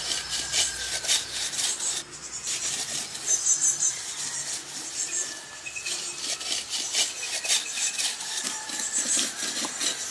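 A hand-held stone scraped in quick, uneven strokes along a straight wooden arrow shaft, rasping the wood as it shapes it.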